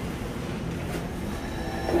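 Steady low rumble of running machinery, with a faint whine coming in near the end.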